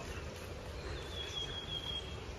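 Outdoor ambience with a low steady rumble. About halfway through, a single high, thin whistled note is held for about a second, like a bird call.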